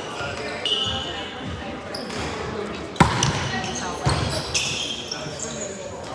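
A volleyball being struck in a large echoing gym: one sharp hit about halfway through, the loudest sound, and a weaker hit about a second later. Short high squeaks come near the start and about three-quarters through, with players' voices in the background.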